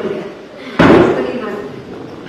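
A sudden loud bang about a second in, the loudest sound here, dying away over about a second.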